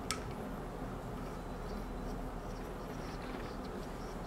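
Brass diffuser being threaded by hand into an E61 espresso group head: one light click at the start and a few faint ticks later, over a low steady hum.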